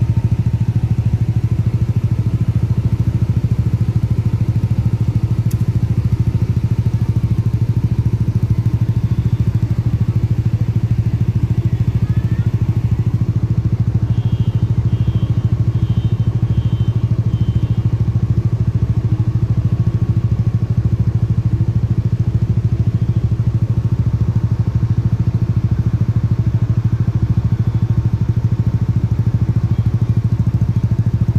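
A nearby engine running at a steady idle, a constant low drone. About fourteen seconds in, a short run of faint high beeps sounds over it.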